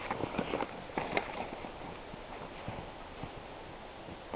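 Footsteps crunching in snow, several irregular steps close together in the first second and a half, then a few faint ones.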